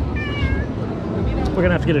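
A Norwegian forest cat gives one short meow, about half a second long, near the start.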